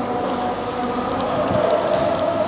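Steady mechanical drone of room machinery, holding a constant tone, with a few faint clicks near the end.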